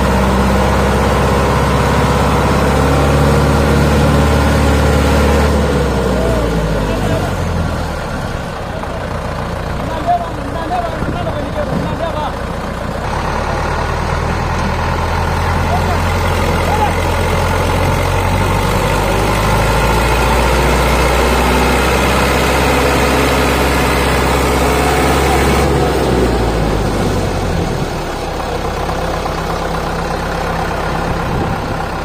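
Diesel engines of an HMT 5911 tractor and a JCB 3DX backhoe running under load, revving as they strain to free a sugarcane-laden trailer bogged in mud. The engine note shifts up and down and drops off about eight seconds in, then picks up again a few seconds later.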